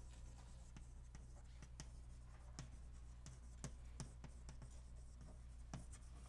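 Chalk writing on a blackboard: faint, irregular taps and scrapes, a few per second, as a word is chalked. A steady low hum lies underneath.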